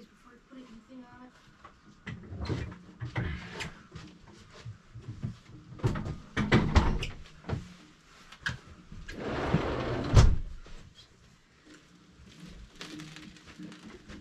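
Metal wire shelf unit knocking and clattering as it is handled and moved, with a longer rattling scrape about nine seconds in that ends in a heavy thud.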